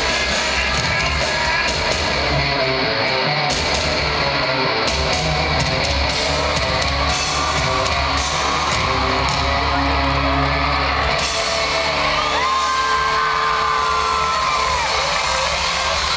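Live rock band playing at full volume in an arena, with electric guitars, bass and drums, heard from the seats with the hall's echo. About twelve seconds in, a long held note slides in pitch.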